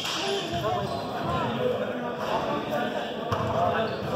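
Indistinct voices echoing in a gym hall, with a couple of sharp knocks of badminton rackets hitting the shuttlecock, the louder one about three seconds in.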